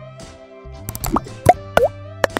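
Background music with a quick run of short cartoon-like pop and plop sound effects about a second in, several with a fast rising pitch.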